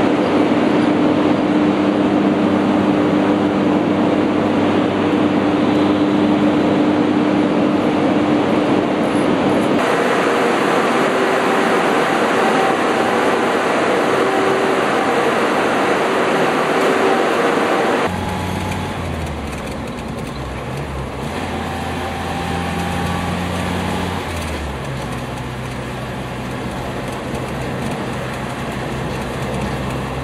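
Loud, steady drone and hum of the hydroelectric generating units in an underground power-station machine hall, with the hum tones changing about ten seconds in. About 18 seconds in, it cuts to a quieter vehicle engine running on the move, its low note stepping in pitch a couple of times.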